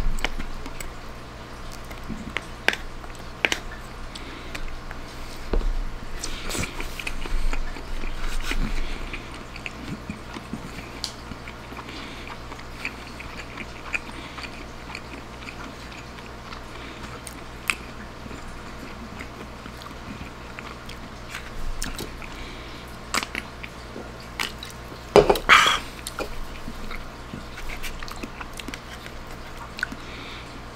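Close-miked chewing and biting of spaghetti, with scattered light clicks of a plastic fork against a pulp bowl. A louder, short burst of noise comes about 25 seconds in.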